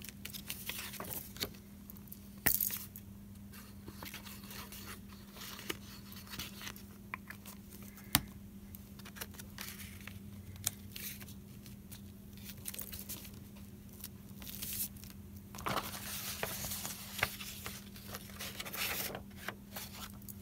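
Paper rustling and scraping as hands press and smooth a photo print down onto a painted journal page, with a couple of sharp clicks and a denser burst of rustling near the end. A low steady hum runs underneath.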